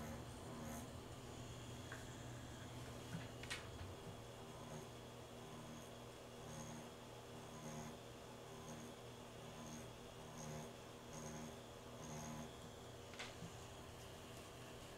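Rotary pen tattoo machine running with a faint steady buzz as its needle shades into practice skin, the tone coming and going with each stroke. A couple of light clicks about three seconds in and again near the end.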